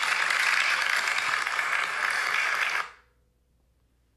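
Audience applause after the end of a talk, cut off sharply a little under three seconds in.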